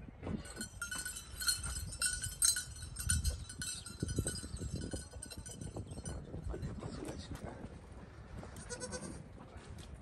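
Goats bleating, several overlapping calls most dense in the first half, another near the end, over a low rumble.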